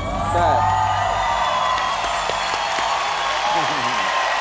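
Studio audience cheering, whooping and applauding as the dance music stops at the end of a performance.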